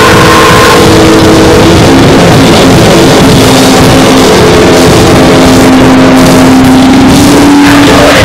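Harsh noise music: a loud, saturated wall of distorted sound with sustained droning tones that slide in pitch and then hold.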